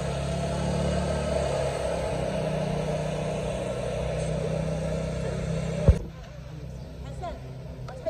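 A steady low motor-like hum under people's voices, ending in a single thump about six seconds in; after that it is much quieter, with only faint voices.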